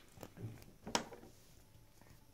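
Light handling of small plastic soda-bottle-shaped lip balm tubes: a couple of faint knocks and one sharper plastic click about a second in.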